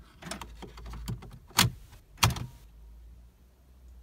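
Car key and dashboard controls being handled: a few small clicks and rattles, then two sharp clicks a little over half a second apart, over a low steady hum.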